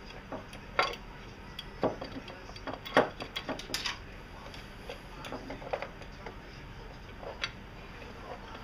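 Irregular metallic clicks and clinks of hand tools and a bolt knocking against the power steering pump bracket while the last bolt is worked free, the loudest knock about three seconds in.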